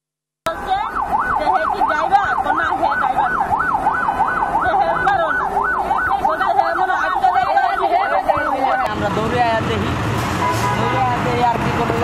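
Emergency vehicle siren in a fast yelp, its pitch sweeping up and down about two and a half times a second. It cuts off about nine seconds in, and voices follow.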